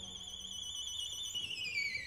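Solo violin holding a very high note with vibrato, then sliding down in pitch from about one and a half seconds in.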